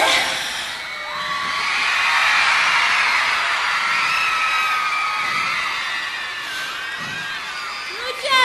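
Large crowd cheering and screaming, full of high-pitched shrieks and whoops, swelling a couple of seconds in and slowly fading toward the end.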